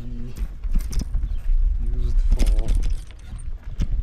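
Bicycle rattling and knocking as it rides over a rough gravel road, picked up through a handlebar-mounted camera, with irregular knocks over a steady low rumble. The rider's voice sounds briefly at the start and again about two seconds in.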